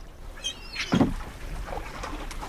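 Sea water sloshing and lapping around a small wooden rowboat, with one louder splash about a second in.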